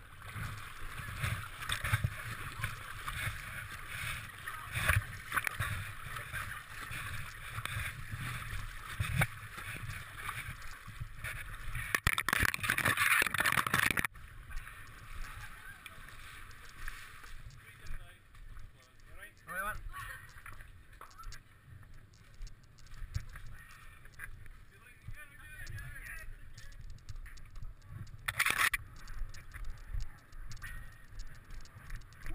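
Water sloshing and splashing around a body-worn camera as the wearer swims through the loch. The water noise cuts off abruptly about halfway through as they climb out onto the rocky bank, leaving quieter movement with occasional knocks.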